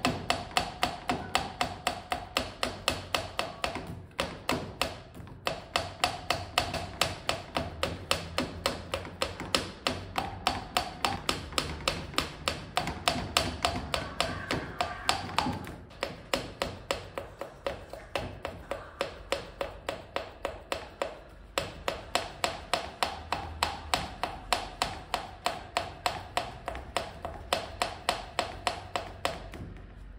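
Valve being hand-lapped into its seat in a Honda PCX 125 cylinder head with lapping compound. The valve head taps against the seat in a steady run of light metallic clicks, about three to four a second, each with a short ring, with a few brief pauses.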